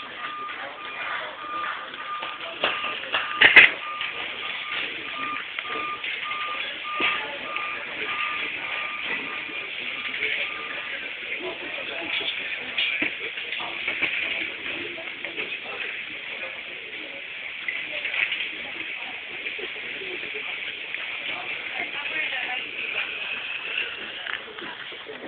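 A steady series of electronic beeps at one pitch, about two a second, that stops about eleven seconds in, over the murmur of people. One sharp knock about three and a half seconds in is the loudest sound.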